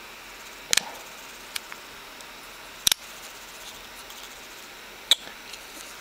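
A few sharp clicks and taps from fingers handling a Nokia N8 phone's body and port covers: a quick double click under a second in, a loud click near three seconds, another near the end, over faint hiss.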